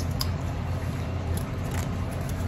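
A steady low background hum with a few faint clicks as small packaged items are handled.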